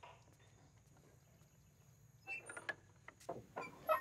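Near silence, then from about two seconds in a run of short metallic clicks and rattles from a bunch of keys jangling.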